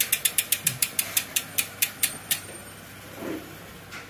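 Rear freehub of a full-carbon road bike (a Novatec hub) ticking as the wheel spins down: the pawl clicks slow from about eight a second to about two a second and stop about two and a half seconds in.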